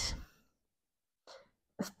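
A woman's short, forceful breath out through the mouth, a brief breathy hiss at the very start, followed by near quiet with a faint tick just before speech resumes.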